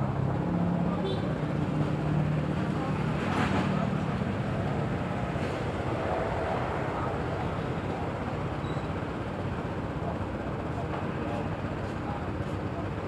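Steady road traffic noise, with a passing vehicle swelling about three and a half seconds in, and background voices.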